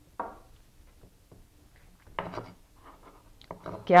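A white cutting board being turned and slid on the counter, with sliced green chilies pushed together on it: faint rubbing and scraping, with a couple of short, louder scrapes about two seconds in and near the end.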